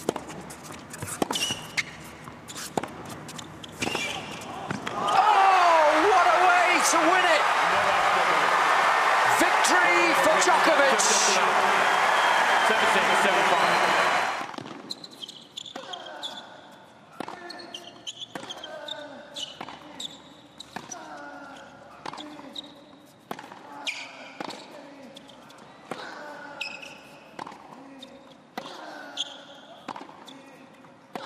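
Tennis rally on a hard court: racket strikes on the ball and squeaking shoes. About five seconds in, loud crowd cheering and applause breaks out and lasts about nine seconds, then cuts off. Another rally follows, with regular ball strikes and shoe squeaks.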